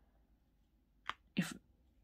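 Near silence for about a second, then a faint small click and a short breathy spoken word.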